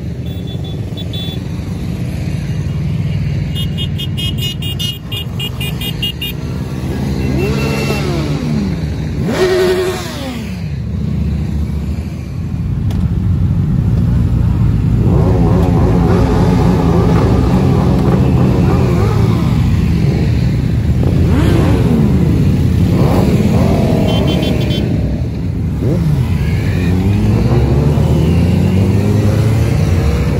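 A long line of motorcycles riding past one after another, each engine's pitch sweeping up and then falling as it goes by. About halfway in a dense pack passes and the sound grows louder and fuller.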